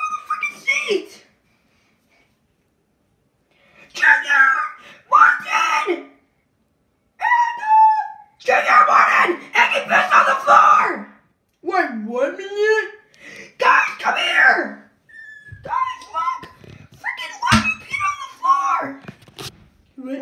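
High-pitched voices yelling and screaming in bursts, with short pauses between bouts and a few sharp knocks near the end.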